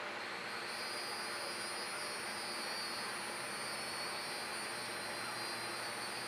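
Steady outdoor background noise, with insects setting up a steady high-pitched drone within the first second.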